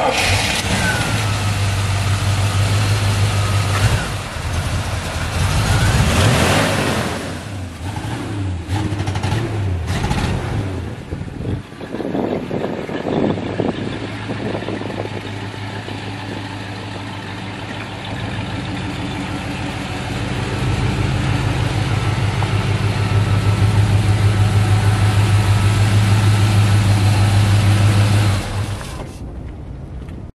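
An old pickup truck's carbureted gasoline engine running: it revs up and back down around five to seven seconds in, idles through the middle, and runs louder and faster with an even pulse for most of the last ten seconds before dropping back near the end.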